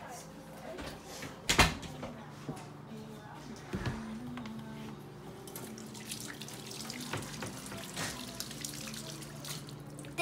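Kitchen tap running into a stainless steel sink as hands are washed under the stream, with a sharp knock about a second and a half in.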